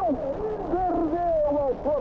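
Excited Portuguese-language football commentary: a commentator's voice drawn out in one long call over the broadcast's background noise.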